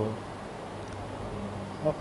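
A low, steady buzzing hum under faint room noise.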